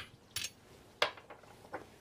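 Brass rifle cases and an aluminium reloading block being handled, making light metallic clinks: three sharp ones at the start, about half a second in and about a second in, then a few fainter ticks.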